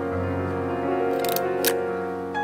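Soft piano music plays throughout, and over it the Yashica digiFilm Y35 toy camera's controls click: a short rattle of clicks a little past halfway, then one sharp click near the end as the shutter is worked.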